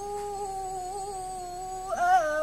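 A boy's voice reciting the Quran in tilawah style, holding one long steady note with a slight waver, then turning up in pitch right at the end.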